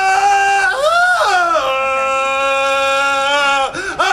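A man hollering at full voice: a long held note, then a swoop up and back down about a second in, then a long, lower held note that breaks off near the end.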